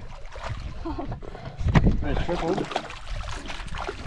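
Hooked barramundi thrashing and splashing at the surface beside the boat, with one louder sharp hit just under two seconds in.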